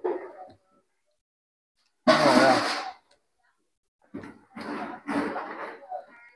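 A man's wordless vocal sounds while eating: one loud breathy exclamation about two seconds in, then a few short murmurs near the end.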